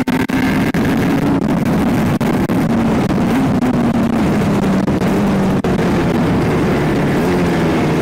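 Aprilia sport motorcycle engine running while riding along, with heavy wind rush on the microphone; the engine note slowly drops in pitch as the bike eases off.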